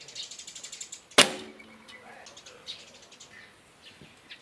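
A barebow recurve shot: the bowstring is released with one sharp snap about a second in, followed by a brief ringing of the string and limbs. Before it comes a fast run of high ticks, and faint high chirps follow later.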